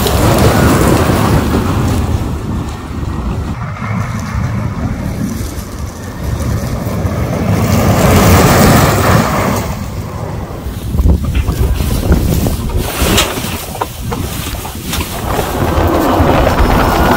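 Electric off-road buggy driving on gravel, mostly tyre rumble and crunch with wind buffeting the microphone. It swells as the buggy passes near the start and again about halfway through.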